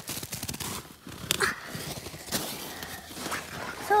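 Footsteps crunching through snow, with irregular crackles of twigs and branches brushed and stepped on.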